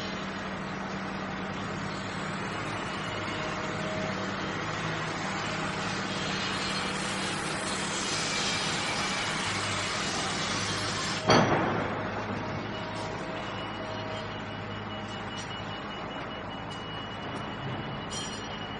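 Road noise heard from inside a moving car: a steady hum of engine and tyres. About eleven seconds in there is one sudden loud thump.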